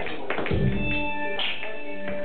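Live electronic indie band playing: drum kit hits keep a beat under sustained synthesizer notes.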